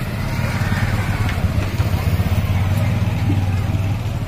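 An engine idling nearby, a steady low drone with faint voices in the background.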